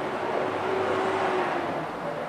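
A passing motor vehicle: a rushing noise that swells from about half a second in and fades toward the end.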